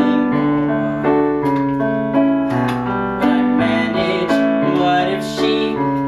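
Piano accompaniment playing slow, sustained chords that change about once a second.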